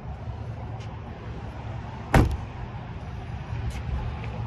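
A single sharp knock about two seconds in, over a steady low background rumble.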